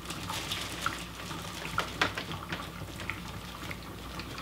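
Plastic packaging crinkling in short crackles as a nasal cannula is handled out of its bag, over the steady low hum of an oxygen concentrator running.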